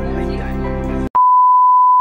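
Background music that cuts off abruptly about a second in, replaced by a loud, steady test-tone beep of the kind played with TV colour bars, used as a transition effect.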